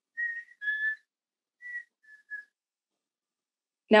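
A person whistling a bird call in five short, clear notes, each higher note dropping to a slightly lower one: a pair near the start, then one higher and two shorter lower notes about a second and a half in. The call sounds a little like a black-capped chickadee.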